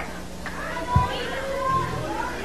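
Faint background voices with children's chatter, under a steady low electrical hum, with a soft low thump about a second in.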